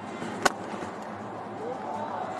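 Cricket bat striking the ball once for a boundary: a single sharp crack about half a second in, over steady stadium background noise.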